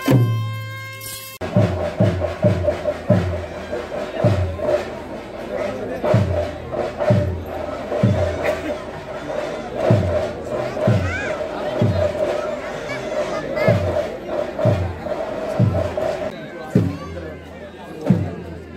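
Festival drumming amid a crowd: deep drum strokes, each dropping in pitch, beat at an uneven pace over a dense steady layer of music and crowd voices. The drumming stops shortly before the end.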